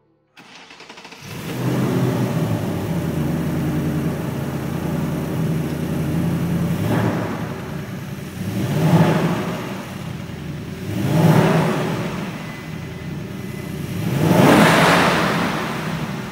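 2024 Mustang Dark Horse's 5.0 Gen 4 Coyote V8 starting and settling into a steady idle on its new 90mm twin throttle bodies. It is then revved four times, the last rev the longest.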